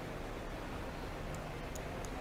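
Steady low hiss and hum of room noise in a large indoor hall, with a few faint ticks in the second half.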